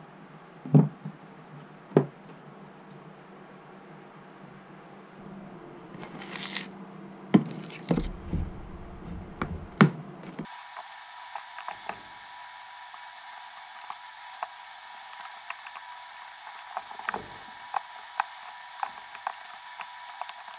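A drywall taping knife knocking against a plastic utility sink as it is washed off, a handful of sharp knocks. About halfway through, it gives way to the knife scraping joint compound around a metal mud pan: small, soft scrapes and clicks.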